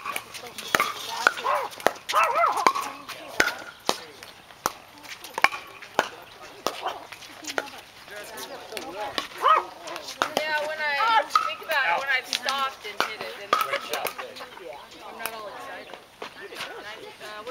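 Pickleball play: sharp pops of paddles hitting the hollow plastic ball and the ball bouncing on the hard court, irregular and repeated throughout, with voices in the background.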